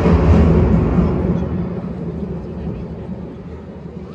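Marching band's loud low hit, drums with sustained low notes, dying away steadily over about four seconds as it rings through a large hall.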